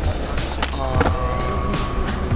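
Hip-hop track playing, with a steady deep beat and sharp percussion strokes, and a held melodic note coming in about a second in.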